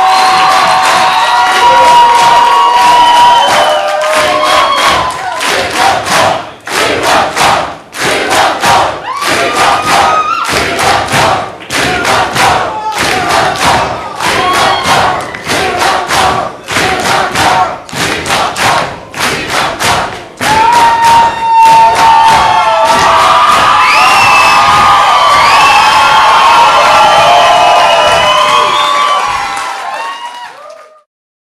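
Concert crowd cheering and shouting. For a long stretch in the middle they clap together in a steady rhythm, about two claps a second, then go back to cheering and whistling, which fades out right at the end.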